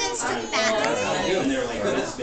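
Several people talking over one another: indistinct family chatter, with no other sound standing out.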